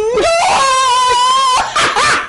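A person's high-pitched, drawn-out squealing laugh: a wavering held note that breaks off just after the start, then a second long one, ending in a breathy gasp near the end.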